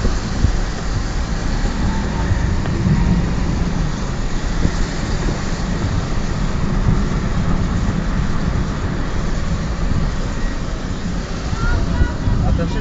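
A car being driven: a steady, low rumble of engine and road noise.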